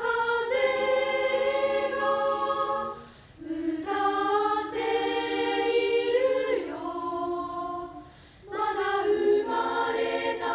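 Unaccompanied three-part girls' choir of about twenty young voices singing sustained chords in long phrases. There are brief breaks between phrases about three seconds in and again about eight seconds in.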